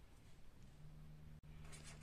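Faint strokes of a felt-tip marker writing on paper near the end, over near silence with a low, steady hum.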